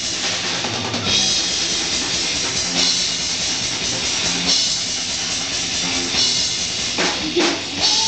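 Live rock band playing an instrumental passage at full volume, the drum kit to the fore with bass drum and cymbal hits over electric guitar and bass.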